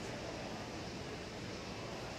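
Steady ambient room noise inside a large retail store: an even background hiss and hum with no distinct events.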